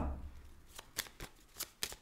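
A deck of fortune-telling cards shuffled by hand: a run of soft, irregular card clicks and slaps, starting about half a second in.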